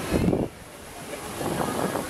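Wind buffeting the microphone, loudest in the first half second, over the steady rush of ocean surf breaking.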